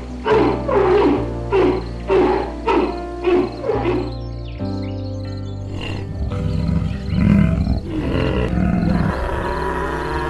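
A regular series of animal calls, about two a second, each sliding down in pitch, over background music. They stop about four and a half seconds in, and a different, lower, steadier sound with music takes over.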